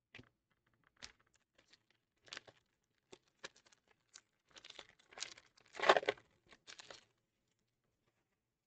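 2022 Donruss baseball cards being flipped through by hand: scattered short rustles and slides of card stock. A denser run of crinkling and rustling comes between about four and a half and seven seconds in, loudest around six seconds.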